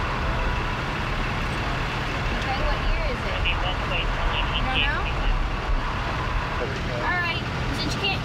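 Steady rumble of road traffic, with a few short, quiet voices in between.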